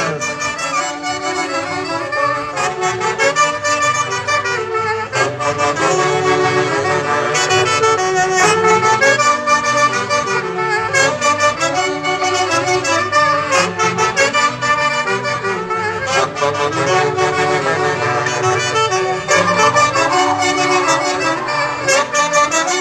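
A huaylarsh dance tune played live by an Andean folk orchestra led by saxophones, keeping a steady, even dance rhythm.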